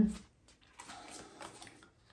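Faint rustling and sliding of tarot cards being handled, starting about a second in.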